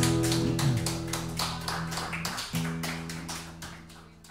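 Acoustic guitars played live, a chord ringing under quick, evenly spaced percussive taps on the strings, about five a second, the whole sound fading out steadily.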